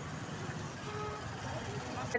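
Street background noise: a low, even hum of traffic, with no single loud event.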